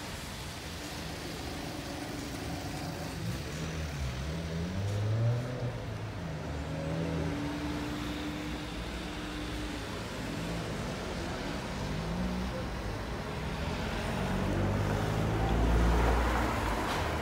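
Road traffic: car engines running and passing by, a steady low rumble with wavering engine tones, growing louder near the end as a vehicle comes close.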